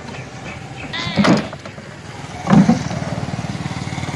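A small engine starts running steadily with a rapid, even pulse about two and a half seconds in, after a brief voice-like sound about a second in.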